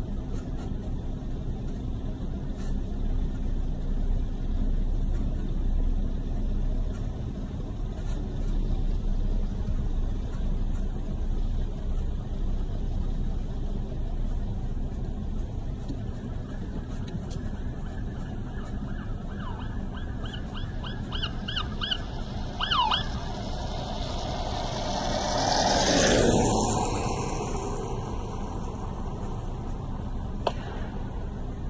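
Emergency vehicle siren giving a quick run of short rising chirps, about three a second, ending in a couple of longer sweeps, over a steady low rumble. A few seconds later a vehicle passes close by with a rush that is the loudest sound.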